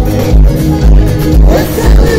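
Live band music played loud over a PA system, with a heavy bass beat about twice a second and a voice singing near the end.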